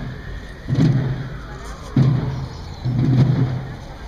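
Procession drums beating a slow, steady march, about one heavy beat a second.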